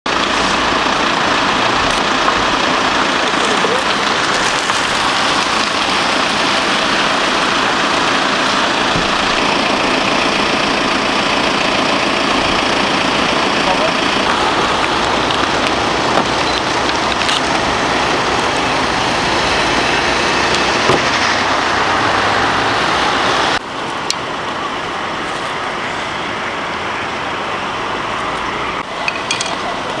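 Steady running noise of vehicles or machinery mixed with indistinct voices. About 23 seconds in it cuts abruptly to a quieter, steady background hum.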